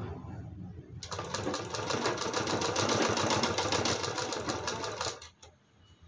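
Usha sewing machine running a line of stitches along the piping on a blouse sleeve edge. A fast, even needle rhythm starts about a second in and stops after about four seconds.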